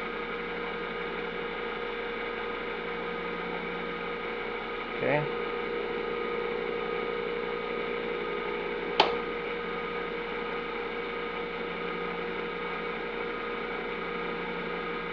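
Steady electrical hum with a buzzy row of overtones from a running homemade SCR/SIDAC pulse-charging circuit dumping into a battery. One sharp click comes about two-thirds of the way through.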